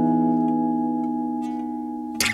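Background music: one chord on acoustic guitar, struck just before and left ringing, slowly fading.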